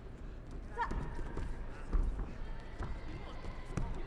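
Freestyle wrestlers hand-fighting on the mat: scattered slaps and thuds of hands and feet, the loudest about two seconds in, with a shout about a second in.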